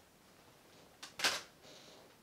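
Plastic disc cases being handled: a sharp click about a second in, then a short scraping rustle as a case is slid off the stack.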